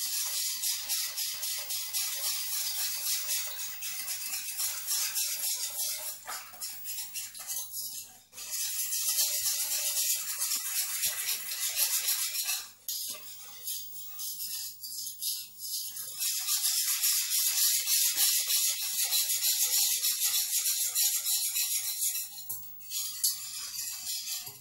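Fresh yeast being crumbled and rubbed between the fingers into sugar in a bowl: a rhythmic, gritty rustling in several spells, broken by short pauses.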